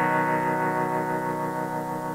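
Teenage Engineering OP-1 synthesizer with a guitar-like, effected tone letting its last note ring on and slowly fade, with no new note played: too long a pause after the last note of the loop.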